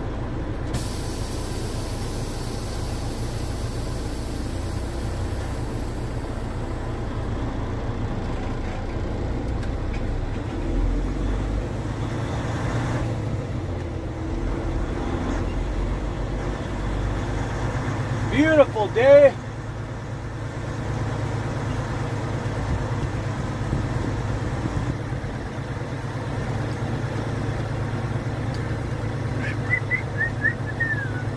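A semi truck's diesel engine running in the cab as a steady low drone, with a hiss of air that fades away over the first few seconds. About eighteen seconds in there is a brief, loud wavering pitched sound, the loudest moment.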